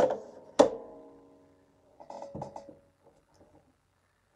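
A hard object knocks on the craft table with a short ringing tone that fades over about a second and a half, followed by a few lighter knocks as craft pieces are handled.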